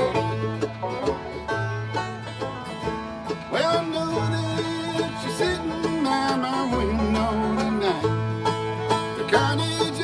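Live acoustic bluegrass band playing an instrumental passage: fiddle, banjo and guitar over mandolin and upright bass, the bass sounding a run of repeated low notes.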